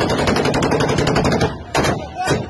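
Automatic gunfire: one long, rapid burst of shots that stops about three-quarters of the way through, followed by a few more quick shots near the end.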